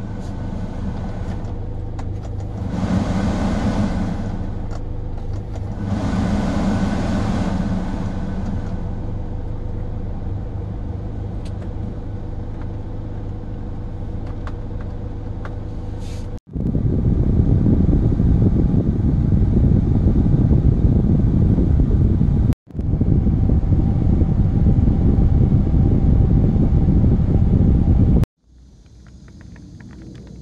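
Hyundai Grand Starex van with its engine running, heard from inside the cabin while the climate controls are tried, over a steady low hum with two louder surges about 3 and 7 seconds in. After a couple of cuts, a louder, coarser rumble takes over.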